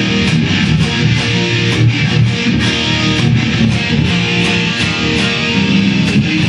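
ESP electric guitar played solo, a continuous run of quickly picked notes and chords.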